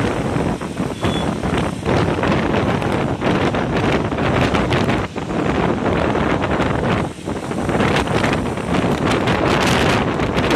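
Wind buffeting the microphone of a camera moving along a road in traffic: a loud, continuous rumbling noise, with brief dips about five and seven seconds in.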